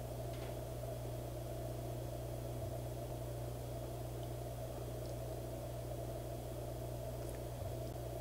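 Room tone: a steady low hum with no other sound.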